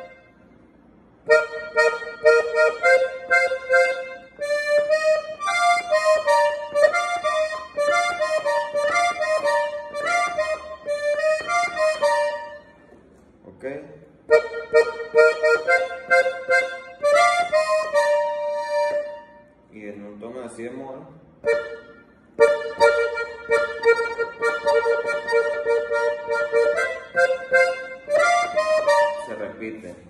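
Piano accordion playing a melody on its treble keys, in phrases of held, reedy notes, with three short pauses between phrases.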